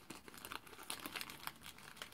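Faint crinkling of a small clear plastic bag being handled by hand: light, irregular crackles and ticks.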